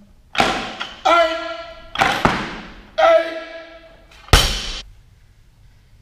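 Barbell loaded with rubber bumper plates repeatedly knocking against the gym floor during pulls: about six thuds roughly a second apart. Some are followed by a short metallic ring from the steel bar. The last and loudest comes as the bar is dropped.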